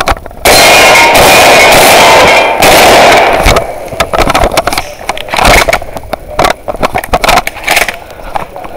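Movement noise from a head-mounted camera on a shooter moving between positions. A loud, distorted rushing noise lasts about three seconds, then comes a run of irregular scuffs and clatters of footsteps on dirt and gear knocking.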